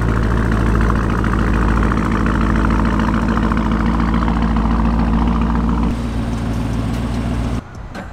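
Lamborghini Urus's twin-turbo V8 running steadily at low revs. The note drops a little about six seconds in and stops abruptly near the end.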